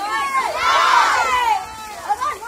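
A group of schoolchildren shouting together in chorus, one loud burst of many voices lasting about a second in the middle.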